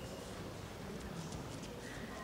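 Faint, light taps and clicks in a large hall over a low murmur of voices, from a table tennis ball and players' shoes between rallies.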